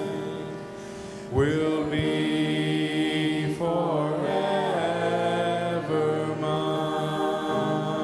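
Church worship singers and choir singing a slow song with long held notes; the sound dips briefly about a second in, then a new phrase comes in loudly.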